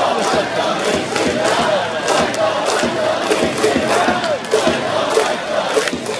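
Baseball stadium crowd chanting and cheering, many voices rising and falling together, loud and steady, with scattered sharp clicks.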